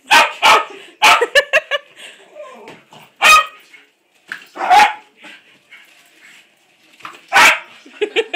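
Small dog barking at a balloon it is trying to reach and pop: short, sharp barks, a quick run of them about a second in, then single barks spaced a second or more apart.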